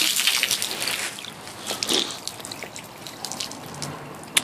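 Water gushing from a cast-iron street water pump and splashing onto paving stones. It is loudest for about the first second, then quieter.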